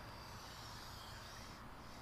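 Quiet room tone: a faint steady low hum with a light hiss, nothing happening.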